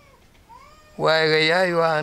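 An elderly man's voice drawing out one long vowel at a steady low pitch, starting about a second in and held for over a second.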